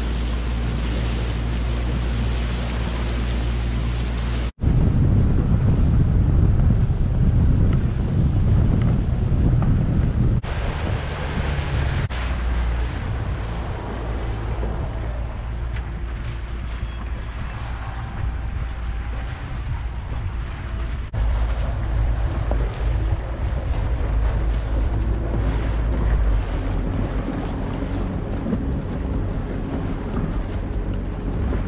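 Outboard motor running with the boat under way, a steady low hum under water rushing past the hull and wind buffeting the microphone. The sound changes abruptly several times, first about four seconds in.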